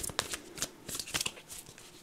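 A deck of cards being shuffled by hand: an irregular run of quick card-edge snaps and rustles, several a second.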